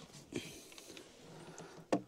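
Faint rustling and handling noise as the camera is moved around, with one sharp click near the end.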